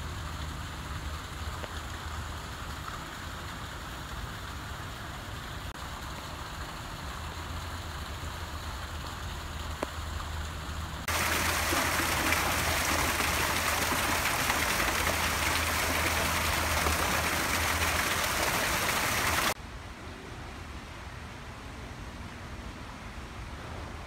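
Water pouring from a stone fountain's spout and splashing, a steady hiss that starts suddenly about eleven seconds in and cuts off about eight seconds later. Before and after it there is a quieter outdoor background with a low hum.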